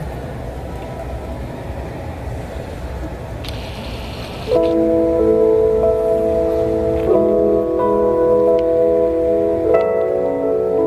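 Live venue room noise, then about halfway through a keyboard starts playing sustained chords that change every second or two: the opening of the band's instrumental intro.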